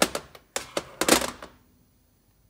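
Small steel Honda GX25 crankshafts set down on a sheet-steel workbench, clattering against it and each other in a quick irregular run of metal clicks and knocks with brief ringing. The knocks stop about a second and a half in.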